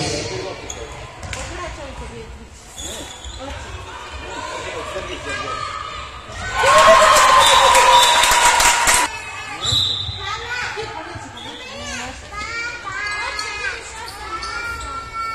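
Youth handball game in a sports hall: a handball bouncing on the hall floor amid high-pitched children's shouts and calls. About halfway through comes a loud burst of shouting that lasts a couple of seconds and then cuts off.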